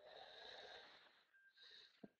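Near silence, with two faint, soft breaths, the first over the first second and the second near the end.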